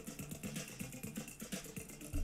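Faint video-game background music under a quiz countdown: a few low held tones with a quick, even ticking pulse while the answer timer runs down.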